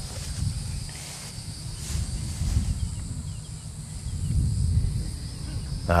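Outdoor ambience: an uneven low rumble of microphone noise under a faint, steady, high drone of insects in the grass.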